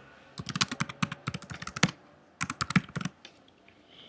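Typing on a computer keyboard: rapid key clicks in two runs with a short pause between them, as a line of text is typed.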